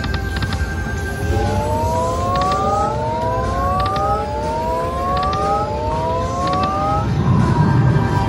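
Aristocrat Timberwolf slot machine during its free games: a series of about four overlapping rising electronic tones as the reels spin, over steady casino background noise. Just before the end a short win tune starts.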